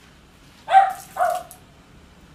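A dog barking twice, two short barks about half a second apart.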